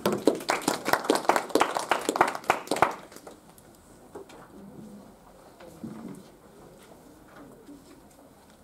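Brief applause from a small group of people in a small room, distinct claps for about three seconds that then stop, followed by faint shuffling.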